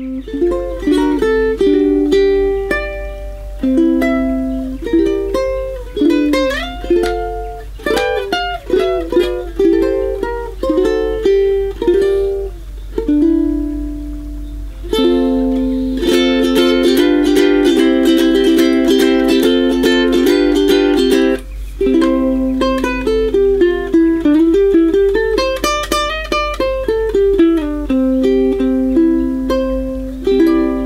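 Aostin AT100 tenor ukulele played solo on its original Aquila strings: a melody of plucked notes, with a denser, continuous run of fast strokes from about halfway through until around two-thirds of the way, when it breaks off briefly before the melody resumes.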